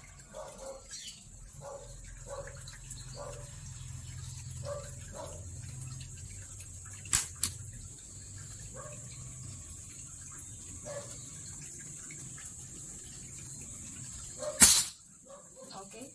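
Ape Alpha .177 PCP air rifle firing once, a single sharp loud report near the end. A pair of faint clicks comes about halfway through.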